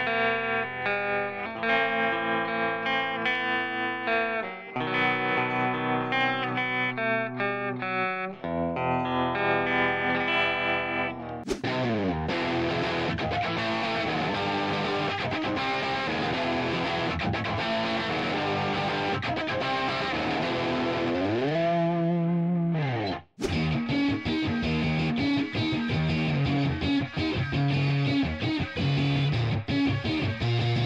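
Electric guitar (a Rockdale Strat-style with two single-coil pickups and a humbucker) playing clean-tone notes and chords. About eleven seconds in it switches to a distorted overdrive tone, with a couple of swooping pitch bends and a momentary break about two-thirds of the way through.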